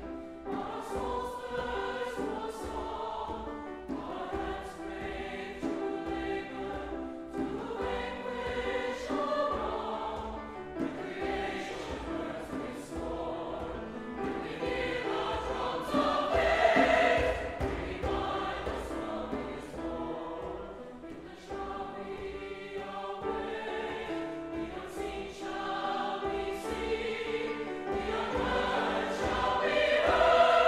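Mixed choir singing in harmony, accompanied by piano and strings, swelling to its loudest a little past halfway, easing off, then building again near the end.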